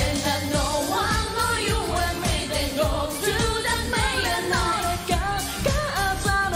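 Live J-pop performance: a female lead vocal singing a melody over a backing band with a steady drum beat.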